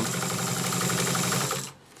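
Pfaff 30 straight-stitch sewing machine running at a steady high speed, stitching through layers of heavy ballistic nylon without strain. It stops suddenly about one and a half seconds in.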